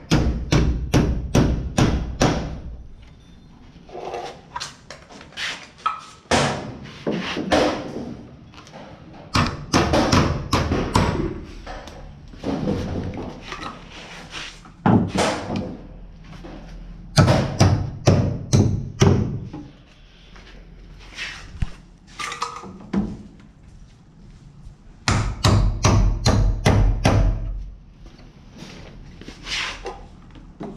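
A hammer driving nails to fix blue plastic electrical boxes to wooden wall studs, in quick runs of strikes with short pauses between them.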